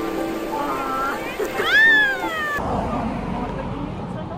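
A loud, high-pitched squeal about a second long, rising and then falling in pitch, preceded by a shorter rising squeak, over the rush of shallow river water. After a sudden cut, there is low, steady outdoor noise.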